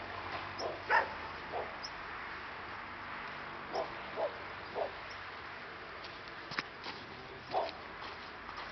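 A dog barking in short single barks, about seven in all, coming in small clusters, over a steady background hiss.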